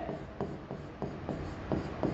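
Chalk writing on a chalkboard: a run of short, irregular scratching strokes and light taps as a word is written out.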